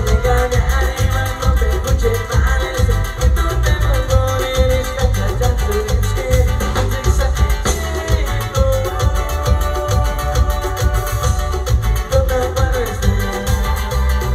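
Live band playing Purépecha pirekua dance music, with a steady beat, strong bass and an instrumental melody line.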